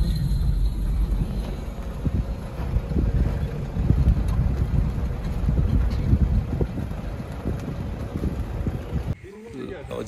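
Low, gusty rumble of wind buffeting the microphone over a car moving slowly across the bridge. It stops abruptly about nine seconds in.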